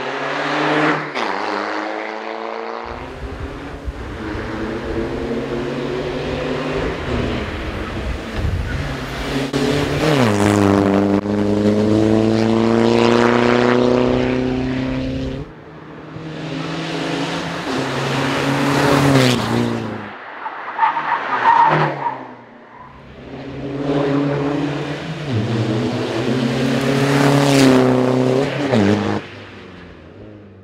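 BMW 120d hill-climb race car's four-cylinder turbodiesel engine under hard acceleration, pitch climbing and then dropping sharply at each upshift, several times over. Each pass swells and fades as the car comes up the road and goes by.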